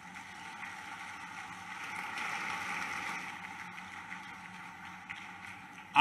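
Large audience applauding, an even wash of clapping that swells about two seconds in and then tapers off.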